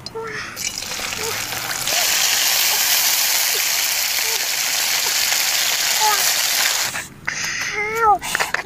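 Live caterpillars sizzling as they are dropped into hot oil in a wok: a steady hiss that swells about two seconds in and stops shortly before the end.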